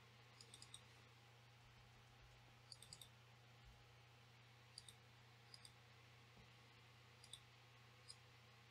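Faint clicks of a computer mouse and keyboard, a few at a time every second or two, over a steady low hum.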